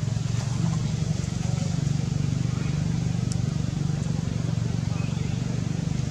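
Steady low hum of an engine running, which grows louder at the start.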